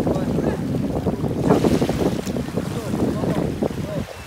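Wind buffeting the microphone, an uneven low rumble, with indistinct voices in the background.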